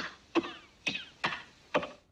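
A man's voice from an old film soundtrack barking mock-German gibberish in four short, harsh, guttural bursts about half a second apart, each cutting in sharply and dying away.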